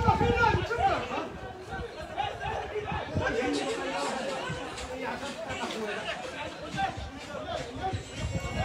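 Several spectators' voices chatting and calling out over one another, loudest in the first second.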